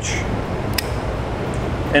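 Steady background hum and hiss, with one light click a little under a second in.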